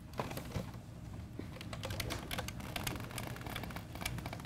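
An irregular run of quick clicks and taps, several a second, starting just after the beginning.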